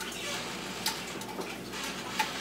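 Faint steady hiss with a couple of small ticks from sesame oil heating in a nonstick skillet, not yet sizzling.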